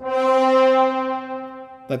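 Sampled four-horn French horn section playing one held marcato (sforzato-like) note. It has a sudden, aggressive attack, is loudest at the start and fades over about two seconds.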